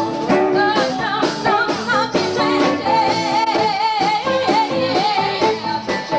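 Live band music: women's voices singing together, with guitar and drums keeping a steady beat of about two strokes a second.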